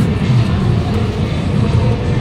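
Steady low rumble of a busy station concourse, with background music playing.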